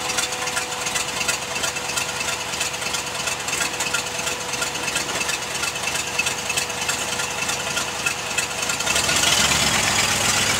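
Engine of a lifted MG-bodied off-road vehicle running at low speed as it crawls over rocks, with a steady tone held over it. About nine seconds in it gets louder as more throttle is given.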